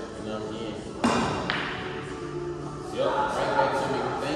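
A pool shot about a second in: the cue strikes the cue ball with a sharp clack that rings off briefly.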